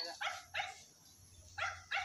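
A dog barking faintly: four short barks in two pairs, the second pair after a short pause.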